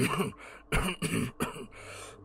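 A man's acted coughing fit: three coughs in about a second and a half, the last one weaker.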